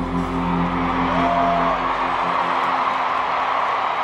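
A band's last held chord dies away over the first two seconds while a large stadium crowd cheers and whoops, the cheering carrying on after the music stops.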